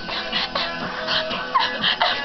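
Pop music playing from a radio, with several short, high-pitched yips or squeals over it.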